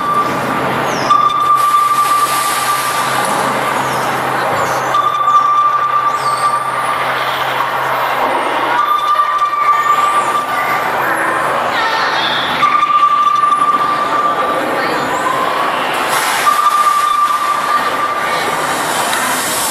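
Electronic soundscape from an immersive projection show's sound system, heard in the theatre. A held mid-pitched tone sounds for about two seconds and returns about every four seconds over a dense, noisy rushing bed with faint high gliding sounds.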